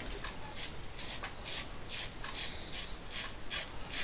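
Double-edge safety razor (King C. Gillette with a Pol Silver blade) scraping through long whiskers on lathered skin in quick short strokes, about two or three a second.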